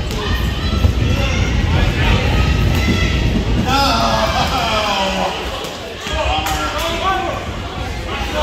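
Spectators' voices talking and calling out, echoing in a school gymnasium, with a few thuds of a basketball bounced on the hardwood floor near the start as a player readies a free throw.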